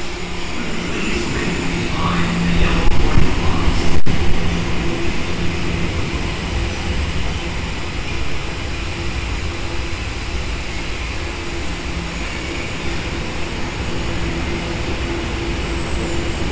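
Tokyo Metro Ginza Line subway train pulling into an underground station: wheel rumble and a steady motor hum, loudest a few seconds in as the train enters, then settling lower as it slows to a stop at the platform.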